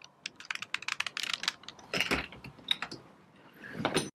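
Plastic Rubik's Cube being twisted quickly by hand: a fast run of sharp clicks that thins out after about two seconds. A louder, duller knock comes about halfway through and another just before the end.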